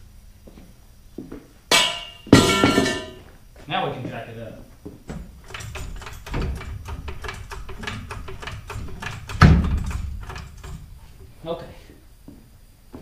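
Metal-on-metal knocks and clanks from work on a truck's rear leaf spring with a steel pry pipe and hand tools: a run of sharp taps, with louder clanks about two seconds in and a heavy thud late on.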